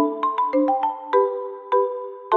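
Light instrumental background music: short, bright pitched notes and chords, a few to the second, each struck and then dying away.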